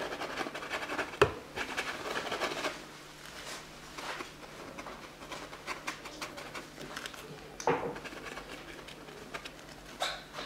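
Semi-dry blending brush scratching over a painted canvas in short strokes, busy for the first few seconds and lighter after. A sharper tap comes about a second in, and another near eight seconds.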